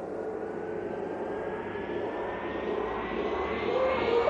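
Electronic riser effect opening a house music mix: a noisy whoosh that climbs steadily in pitch and grows louder.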